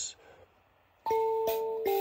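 Mbira dzavadzimu beginning to play about a second in: plucked metal keys ringing in sustained, overlapping notes, with the buzz of its rattles over them. Near silence before the first note.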